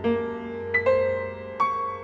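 Grand piano playing a slow solo piece: a few notes and chords struck in turn, each left ringing and slowly dying away.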